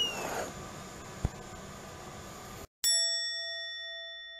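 A bright bell-like ding, a sound effect added in editing, starts suddenly about three seconds in and rings on, slowly fading. Before it there is only faint background noise and a single sharp click.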